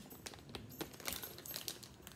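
Plastic snack bag of cracker chips crinkling faintly as it is handled and turned over, a scatter of small crackles.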